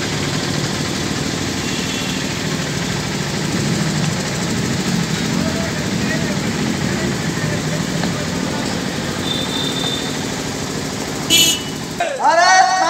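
Steady outdoor street noise with a low engine-like hum from traffic and faint murmuring voices, and a brief sharp clatter near the end.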